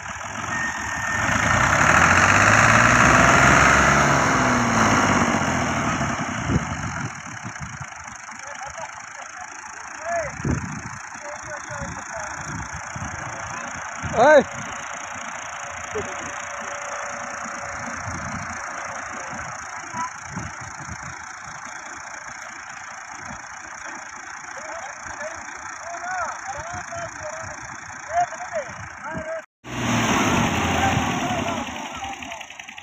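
Diesel tractor engines labouring in deep mud. The revs climb and fall over the first few seconds, then settle to a steadier run. There is one short, loud sound about fourteen seconds in.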